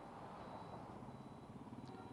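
Faint, steady background noise of an outdoor live feed: a low hum with a thin, steady high tone over it.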